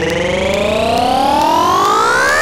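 Synthesizer riser in a psytrance track: one tone rich in overtones gliding steadily upward in pitch.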